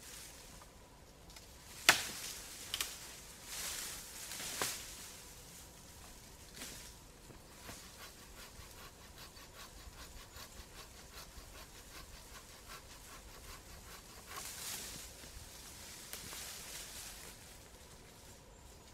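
A hand pruning saw cutting through a tree branch in quick, even strokes, after a sharp crack of wood and some knocks. Near the end, branches and leaves rustle.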